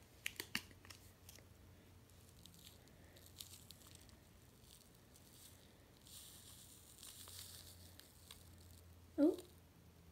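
Faint crinkling and clicking of a small paper sachet being handled, then a soft hiss for a couple of seconds about six seconds in as the Sea-Monkey instant live eggs are poured from it into the tank water.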